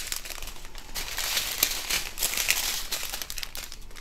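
Strip of small plastic bags of diamond painting drills crinkling as it is handled and straightened in the hands, a continuous crackle with many small clicks.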